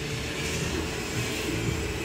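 Steady background hum of machinery with an even room noise and a low rumble underneath.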